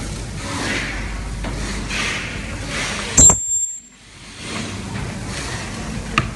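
Steady background noise with a sharp metallic click and a brief high-pitched ring about three seconds in, after which the sound cuts out suddenly for nearly a second before the noise resumes.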